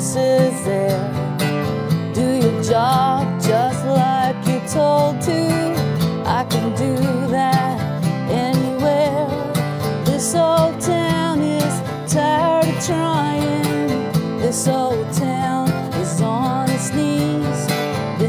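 Acoustic guitar strummed and picked in a country-style song, with a woman singing over it in a wavering, vibrato-rich voice.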